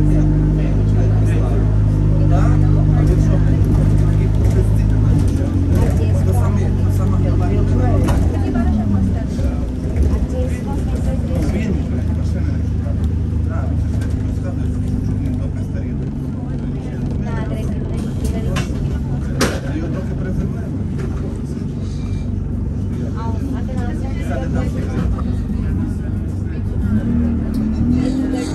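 Engine and road noise of a single-decker bus heard from inside the cabin: a steady low drone for the first eight seconds that shifts to a rougher, noisier rumble after that, with a sharp click about two-thirds of the way through.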